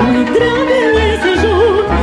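Romanian folk dance song played back from a recording: an ornamented melody with quick trills over a folk band with a steady, pulsing bass beat.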